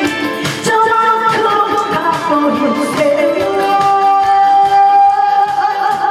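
A woman singing a trot song over amplified backing music with a steady beat, holding one long note about halfway through.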